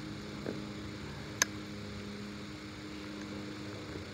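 A steady low machine hum, with one sharp click about a second and a half in.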